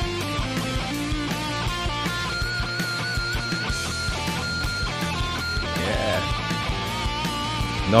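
Heavy thrash/hardcore punk band music: a distorted electric lead guitar holds long notes with wide vibrato over chugging rhythm guitar, bass and drums.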